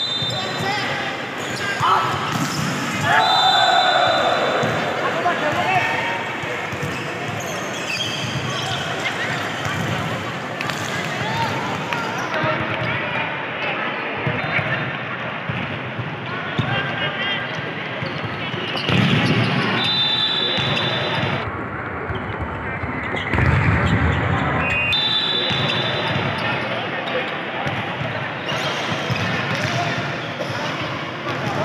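Volleyball being hit and bouncing on a hardwood gym floor, with players and spectators talking and shouting, all echoing in a large sports hall.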